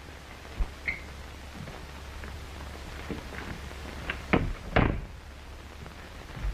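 Steady hiss and low hum of an early optical film soundtrack, with a faint click near the start and a few short knocks about four to five seconds in.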